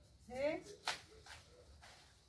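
A brief faint voice, then one sharp snap about a second in and a few softer clicks as a maize (corn) plant and its husks are handled.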